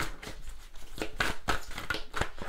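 A deck of oracle cards being handled and shuffled by hand: irregular card snaps and rustles.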